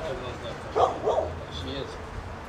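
A large dog barks twice in quick succession, about a second in.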